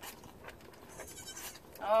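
Young Nigerian Dwarf goat kid bleating briefly in the second half, held on the lap during bottle feeding; a woman says "Oh" at the very end.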